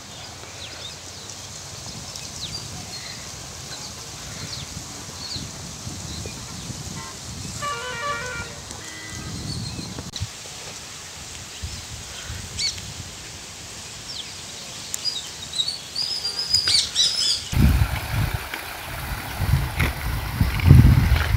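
Birds chirping and calling, with scattered short high chirps and a run of quick repeated notes about eight seconds in, over a low rumble; near the end the rumble turns much louder.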